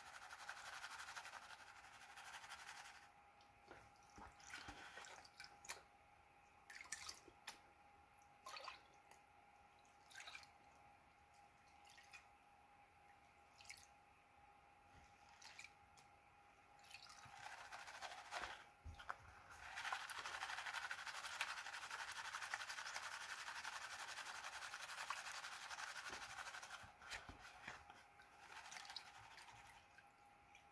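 Gold pan and classifier being worked under water in a tub of muddy water while panning paydirt: quiet dripping and small splashes, then a longer stretch of steady swishing water a little past halfway.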